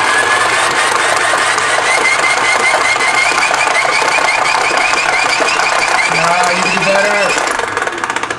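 Hand-crank generator being cranked hard: its gear train whines at a high pitch that creeps slowly higher, wavering about five or six times a second with the turns of the handle, then winds down near the end.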